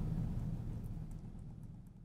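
Faint low background hum fading out steadily, with a few faint ticks, as the audio track ends.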